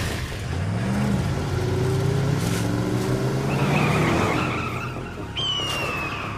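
Cartoon vehicle sound effect: an engine revving, its pitch rising and falling, with tyres skidding. A single high, falling screech comes in near the end.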